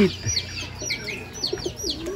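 Racing pigeons in a loft cooing softly, under a run of quick, high, falling chirps from other birds, several a second.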